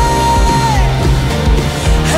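Live worship band playing, with drums and bass under a held sung note that slides down and ends about halfway through.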